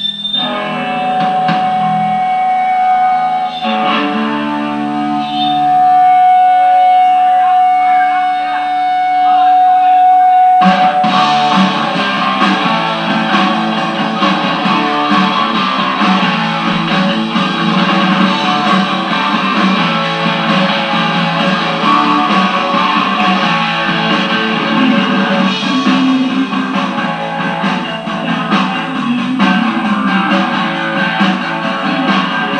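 Live band with electric guitar, played loud in a small room. The first ten seconds or so are held, ringing guitar notes; then the whole band comes in at once, about ten seconds in, and plays on dense and loud.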